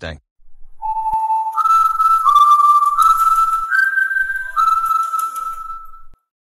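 A slow whistled melody: one clear tone starting about a second in and stepping between about six held notes, each held for most of a second.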